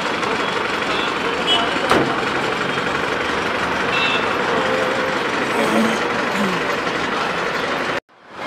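Steady road traffic noise with vehicle engines running and indistinct voices; a single sharp knock about two seconds in.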